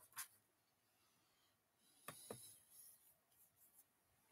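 Near silence: room tone with a few faint clicks and soft rustling from someone moving near the microphone.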